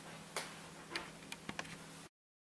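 A handful of faint, irregular clicks over a low steady hum.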